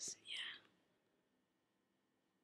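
A soft, whispery voice trails off in the first half-second, then near silence.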